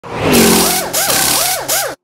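Car engine revving: a steady note, then two quick blips that rise and fall in pitch, cutting off abruptly.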